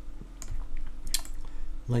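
Computer keyboard keys tapped a few times, with two sharp clicks standing out about half a second and just over a second in.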